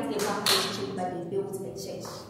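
Speech: a woman's voice talking.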